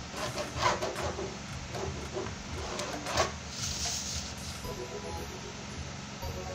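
A ballpoint pen and metal ruler worked on a cardboard sheet: light handling noise with short knocks near the start and about three seconds in, over a steady low hum.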